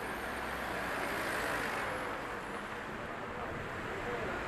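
City street traffic noise: a steady wash of cars driving along a busy road, rising a little near the middle, with faint voices mixed in.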